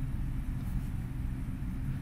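A steady low hum with faint hiss and no distinct events: the recording's background noise.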